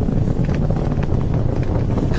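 Falcon 9 first stage's nine Merlin engines during ascent, heard from the ground as a steady low rumble.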